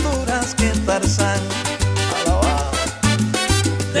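Salsa music in an instrumental stretch between sung lines: a repeating deep bass line under dense percussion and pitched instrument lines.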